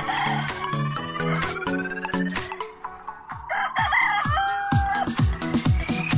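A rooster crowing once about two-thirds of the way in, ending on a long held note, over electronic background music with low bass notes and rising synth sweeps.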